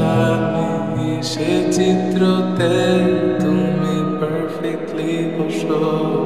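Lofi remake of a Bangla pop song: a singer's voice with reverb sings a melodic line over a slow, soft beat with sustained low notes and light, regularly spaced percussion.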